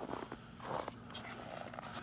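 Footsteps crunching in snow with handling scuffs, a few irregular crunches and clicks, over a faint steady low hum.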